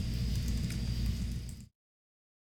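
Steady low hum and hiss of room and microphone background noise, with a faint high whine, that cuts off suddenly to dead silence near the end.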